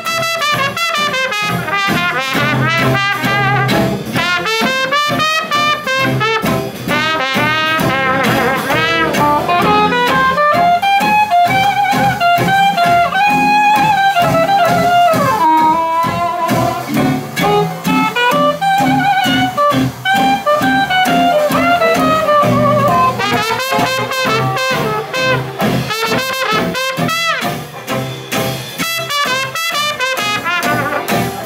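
A small traditional jazz band playing live: banjo, guitars, string bass and drums keep a steady beat under the horns. The cornet leads at the start and comes back in near the end, with a soprano saxophone solo in between.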